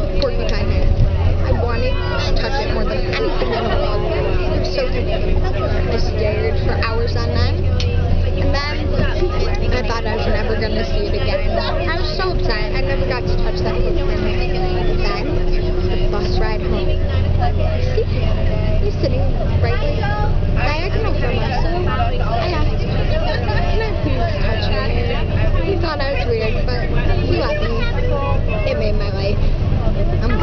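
Inside a moving bus: steady low engine and road rumble with a faint steady whine over roughly the first half, under people's voices and chatter.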